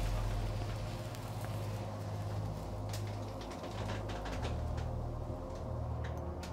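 Low, steady droning tones that shift to a new pitch about four seconds in, with a few faint clicks: a suspense underscore drone.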